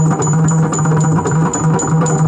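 Yakshagana dance accompaniment: a maddale barrel drum playing a quick rhythm over a held low drone, with a bright metallic tick keeping time about four times a second.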